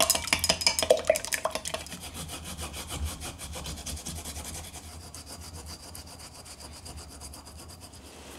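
Eggs being beaten in a glass measuring cup, quick strokes clinking against the glass for about the first two seconds. Then fresh ginger is rubbed on a small metal grater in a steady, rapid rasp.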